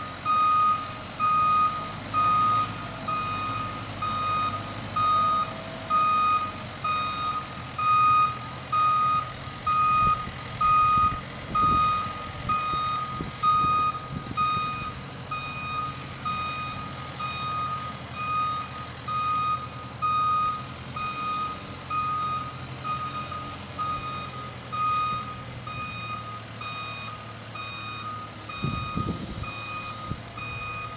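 SkyTrak telehandler's reversing alarm beeping steadily, about once a second, over the machine's diesel engine as it backs up dragging a shed. The beeps are loud at first and grow fainter in the second half.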